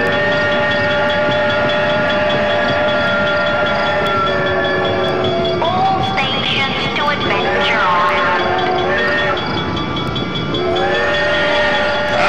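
Train whistle sound effect from a dark ride's soundtrack. A chord of several notes is held for about five seconds, then comes in shorter blasts whose pitch slides up and down as each one starts and stops.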